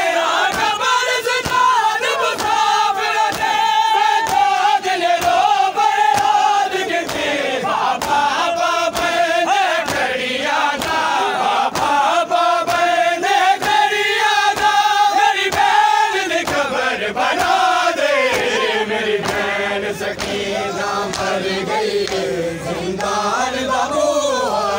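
A noha chanted by men's voices, with a crowd beating their chests in matam, the slaps landing as regular sharp claps about twice a second. The slaps thin out in the last few seconds while the chant goes on.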